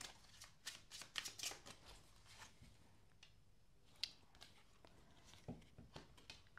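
Faint shuffling of a Tarot Illuminati tarot deck by hand: a cluster of soft card rustles and flicks in the first two seconds, then only a few scattered taps of the cards.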